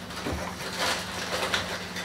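Salt grinder being twisted by hand, giving a few short gritty crunches as the salt crystals are ground.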